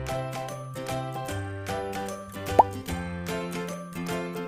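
Upbeat royalty-free background music with a steady beat. About two and a half seconds in comes a short rising 'plop' sound effect, the loudest moment, of the kind added when an on-screen element pops into a slideshow.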